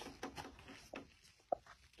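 Faint handling noise of MDF radiator-cover panels being positioned by hand, with one short click about one and a half seconds in.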